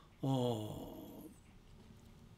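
A man's drawn-out hesitation sound, a long "ehh" that fades into a breathy trail about a second in, followed by quiet room tone.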